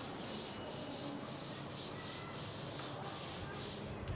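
A chalkboard duster rubbing over a chalk-covered board in quick back-and-forth strokes, about three or four a second, wiping the writing off. The rubbing dies away near the end.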